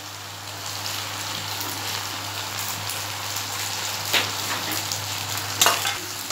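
Chicken and macaroni sizzling steadily in a steel pan on the stove, with two sharp knocks of a utensil against the pan in the second half as ketchup is added and stirred in.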